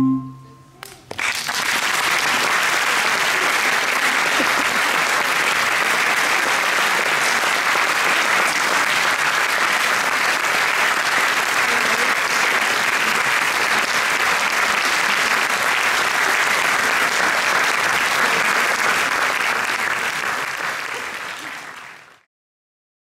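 Audience applauding steadily for a long stretch after the final chord of a flute and percussion ensemble dies away about a second in, then fading out near the end.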